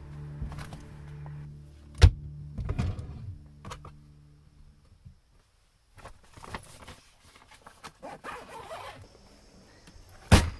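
Clothes being stuffed into a nylon duffel bag and the bag being zipped, with fabric rustling, scattered clicks and one sharp knock about two seconds in. Soft background music fades out about halfway through.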